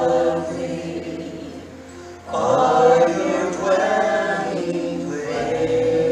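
A man and women singing a slow worship song in harmony, in long held phrases. One phrase fades out about two seconds in, and a new, louder phrase begins right after.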